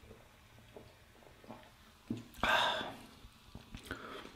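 A person taking a sip of beer from a glass mug: faint small handling sounds, then a short noisy sip lasting about half a second past the middle.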